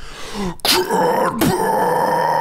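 A man's harsh metal scream delivered right into a handheld microphone. It starts about half a second in after a sharp breath, is loud and held at one steady low pitch, and breaks off briefly near the middle before carrying on.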